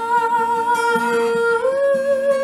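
A woman's voice holds a wordless, hummed note over fingerpicked acoustic guitar, stepping up in pitch about one and a half seconds in.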